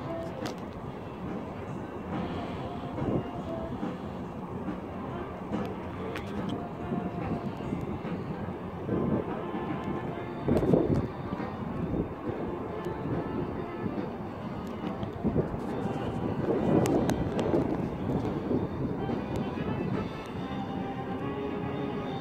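A passenger train's diesel locomotive rumbling far below, heard faintly under a steady outdoor wash of background voices, with a few louder swells partway through.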